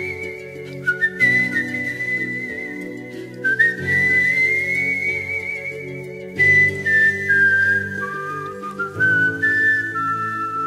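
Instrumental background music: a high, pure-toned whistle-like melody with vibrato, holding long notes that step up and down, over sustained chords that change every couple of seconds.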